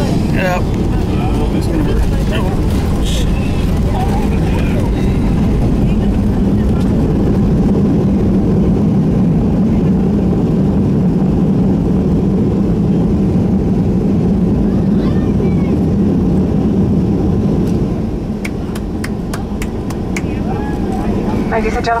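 Cabin noise of a Boeing 757-200 during its landing rollout: a loud, steady engine and runway roar with a low hum. The roar drops off about 18 seconds in as the aircraft slows.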